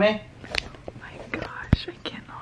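Soft whispering, broken by a few short sharp clicks; the loudest click comes about three-quarters of the way through.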